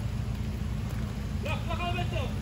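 Toyota Fortuner's engine running low and steady as the SUV creeps down a steep muddy slope, a low rumble.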